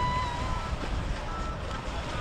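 A high, held call from someone on a boat, rising then steady and ending about half a second in, followed by a few short high notes, over the steady low rumble of boat engines and water.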